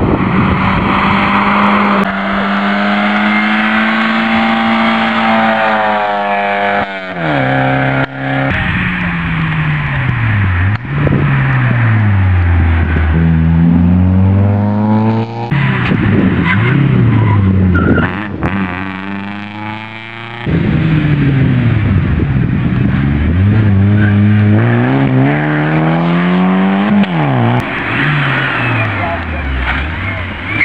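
Rally cars driven hard past one after another, engines revving high and climbing in pitch through each gear, then dropping sharply at the gear changes and when the driver lifts off for a corner.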